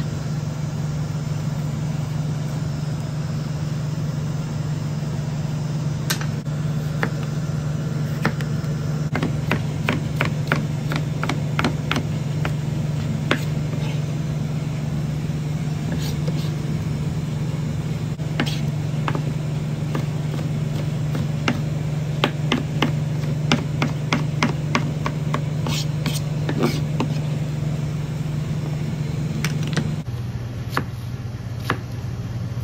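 Knife tapping on a plastic cutting board in runs of quick sharp clicks, starting about six seconds in and thickest in the second half. A steady low machine hum runs under it throughout.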